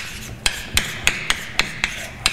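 Chalk writing on a blackboard: a series of sharp taps of the chalk striking the board, about three a second, with scratchy strokes between them.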